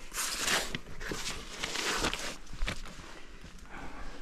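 Rustling and scuffing from climbers moving about on rock with their clothing and gear, coming in a few noisy swells with short scrapes between.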